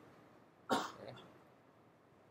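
A man coughs once, a short sharp cough about two-thirds of a second in, with a faint trailing sound after it.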